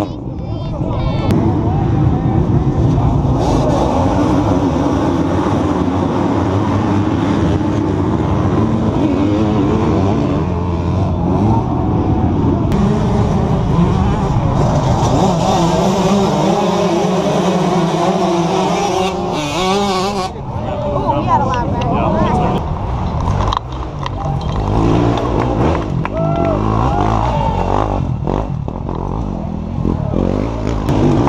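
Many off-road racing motorcycle engines revving and running together, their pitch rising and falling, with people's voices mixed in.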